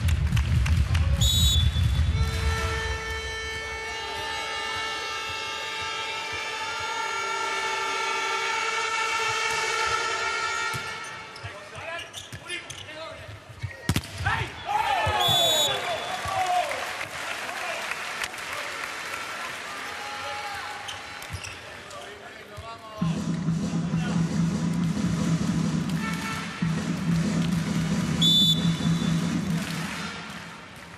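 Volleyball arena sound between rallies: music over the hall's speakers and a volleyball being bounced on the court floor. Three short, high blasts come about a second in, midway and near the end.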